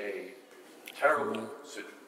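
Speech only: a man speaking in two short phrases with a pause between them.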